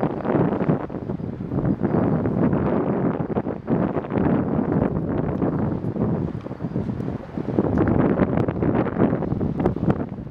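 Wind buffeting the microphone in gusts: a rough rushing that swells and fades every second or two, with occasional crackles.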